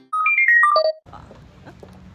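A short, loud electronic jingle: about six quick pure-tone notes, one jump up and then stepping down in pitch, over in less than a second. After it, faint steady background hum and hiss.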